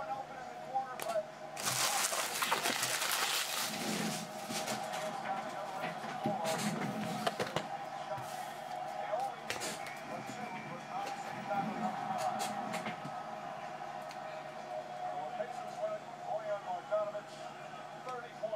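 Faint voices of a televised basketball broadcast running in the background, with a burst of rustling about two seconds in and scattered light clicks and knocks from handling.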